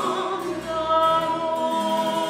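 Soprano singing early-baroque Italian song with harpsichord accompaniment, settling into a long held note about half a second in.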